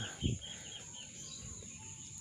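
Chicken clucking once, low and short, just after the start, with faint short bird chirps through the first second.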